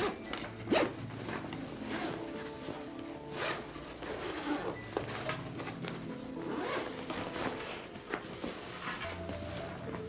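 Eagle Creek Load Hauler duffel's main-compartment zipper being drawn open in a series of separate pulls.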